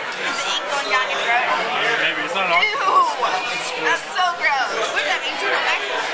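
Several voices talking over one another: the steady chatter of a busy restaurant dining room.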